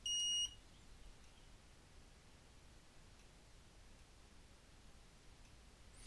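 A single short electronic beep, one steady high tone about half a second long, from the MKS TFT32 3D-printer display board's buzzer as it starts up after reflashing. The board beeps like this at power-up even though it is faulty and hangs at booting.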